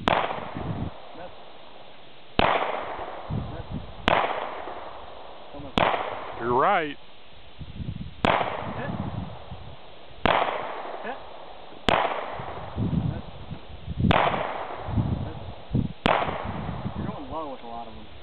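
Nine pistol shots fired one at a time, about two seconds apart, each trailing off in a ringing echo.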